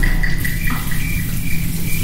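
Water running steadily from a faucet into a restroom sink, over a steady low hum.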